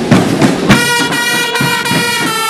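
School marching band playing: snare drum strokes near the start, then the trumpets and trombones hold a long, steady chord from just under a second in.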